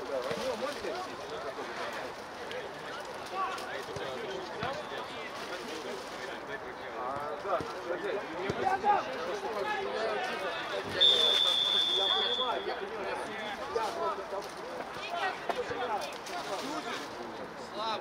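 Players' voices calling across a football pitch, with a referee's whistle blown once in a single long steady blast about eleven seconds in, stopping play.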